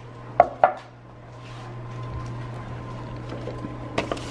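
Two sharp glassy clinks close together as a glass mason jar with a metal straw is handled on a countertop, over a steady low hum.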